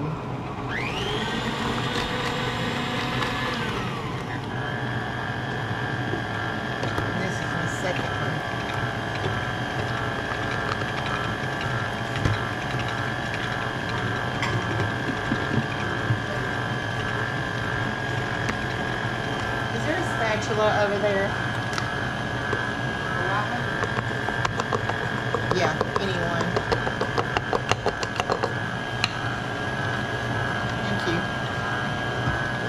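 KitchenAid tilt-head stand mixer with a wire whisk beating cream cheese, butter and powdered sugar. Its motor whine rises as it comes up to speed over the first few seconds, then runs steadily.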